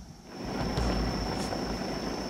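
Low rumbling noise that swells about half a second in and holds, with a thin steady high-pitched tone running through it.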